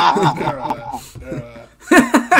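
Several men laughing hard together, with a brief lull near the end.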